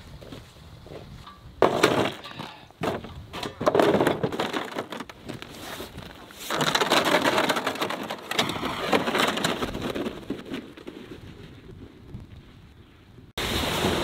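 Irregular crunching and scraping on crusted, icy snow, as of footsteps and gear being moved, with a denser scraping stretch midway. Near the end it cuts abruptly to wind buffeting the microphone.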